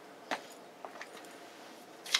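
Footsteps of rubber boots on a hard shop floor: one sharper step about a third of a second in, then two faint ticks.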